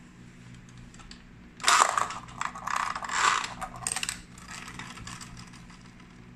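Pull-string spinning-top launcher in the chest of a die-cast Voltes V toy: about a second and a half in, the string is yanked out with a loud ratcheting whirr of the gear mechanism. The freed top then whirs and rattles for a couple of seconds, dying away.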